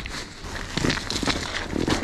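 Irregular knocks and scuffling on the ice as a hooked brook trout is hauled up through an ice-fishing hole and landed.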